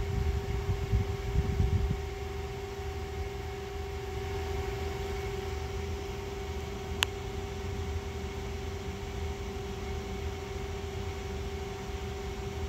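Small electronics cooling fan running with a steady hum and a constant mid-pitched tone. A single sharp click about seven seconds in.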